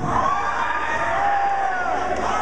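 Concert crowd cheering and yelling, with single shouts rising above the crowd noise and one voice holding a long yell in the second half.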